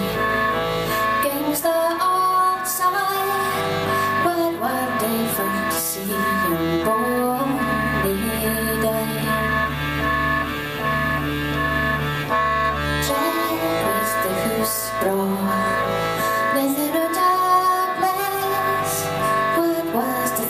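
Live folk music: a piano accordion plays sustained chords while a woman sings. A low drone sounds under it for a few seconds in the middle.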